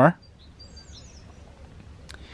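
A bird chirps faintly and briefly, with a few quick high notes about half a second in, over low outdoor background noise.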